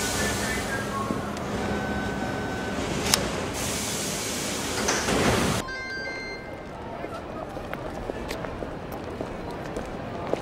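Subway train and platform noise: a steady rumble and hiss with thin whining tones and a sharp clack about three seconds in. About halfway through it cuts off suddenly to quieter city-street ambience with scattered footsteps and crowd chatter.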